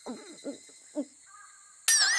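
A cartoon girl's short, muffled voiced sounds as she bites into an ice pop, then near the end a sudden loud, wavering high-pitched squeal as a brain freeze hits.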